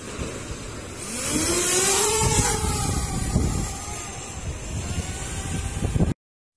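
DJI Mavic drone's propellers whining as it is hand-launched and climbs. The pitch rises about a second in, then eases back down.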